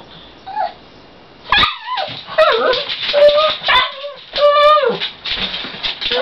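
A pug whining and yipping: a run of short, high, wavering cries that begins about a second and a half in.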